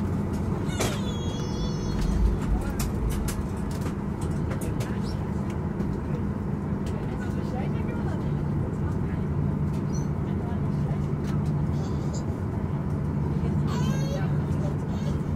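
Cabin noise inside a Boeing 737 taxiing at low power: a steady low engine hum with scattered small clicks and rattles, and passengers' voices.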